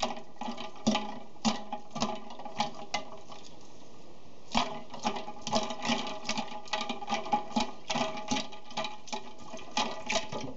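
Ice cubes clinking and knocking against a metal saucepan as a hand stirs them through dye water and quills, with a brief metallic ring after some knocks and a short pause about midway. The ice water chills the freshly dyed quills to set the colour.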